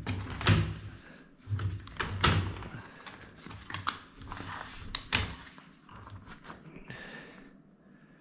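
An upholstery extraction tool and its hoses being handled and hooked up. Irregular plastic knocks and clunks come as the vacuum hose and the solution line's brass quick-connect fittings are fitted. The knocks are loudest in the first half and die away near the end.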